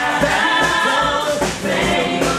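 A stage musical's cast singing together over a band, with a steady bass beat under held sung notes.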